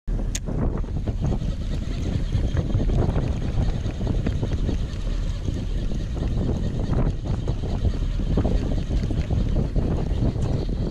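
Steady, loud wind noise buffeting the camera microphone aboard a boat at sea, with a sharp click just after the start and a few faint knocks.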